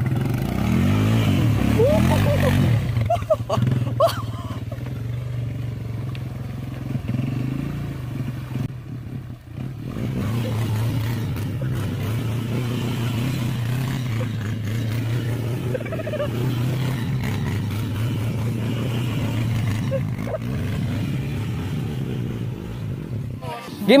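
Four-wheeler ATV engine running steadily as it is ridden over rough ground, with a brief drop in level about nine and a half seconds in. It cuts off just before the end.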